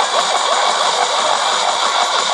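Tecsun PL-600 portable radio on a weak FM signal at 97.0 MHz: loud, steady static hiss with the broadcast only faintly coming through underneath. The reception is noisy and marginal, with interference from a stronger neighbouring station on 97.1.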